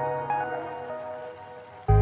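Background music fading out, with the bubbling of kikil simmering in sweet soy sauce in a pan audible beneath it as the sauce reduces. A new piece of music cuts in suddenly near the end.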